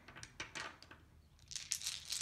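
A few faint clicks of game dice being scooped up off the table and knocking together in a hand, more of them near the end.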